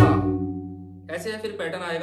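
Tabla pair struck once at the start, the drums ringing on in steady pitched tones that fade over about a second; then a man's voice.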